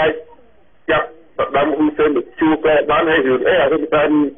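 Speech only: a voice talking in Khmer, with a brief pause in the first second.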